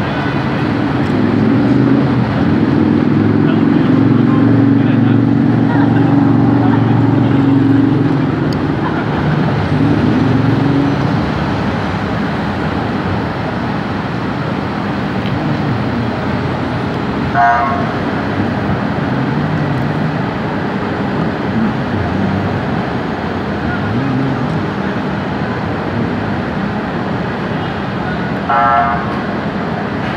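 Steady city traffic and engine rumble, heavier in the first ten seconds, with two short vehicle horn honks, one about halfway through and one near the end.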